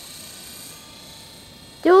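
Distant Belt CP electric collective-pitch RC helicopter in flight: a faint, steady whine of its motor and rotors.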